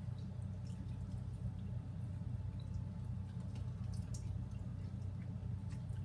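Faint, scattered wet clicks and smacks of several people chewing and sucking on sauced chicken wings, over a steady low hum.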